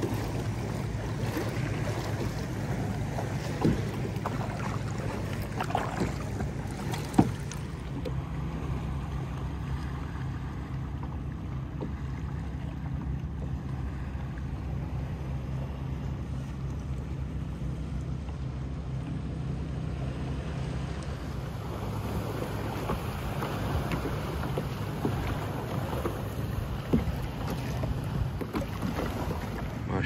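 Water lapping and splashing around a plastic sit-on-top kayak as it is paddled, over a steady low rumble of wind on the microphone. There are two sharp knocks a few seconds in.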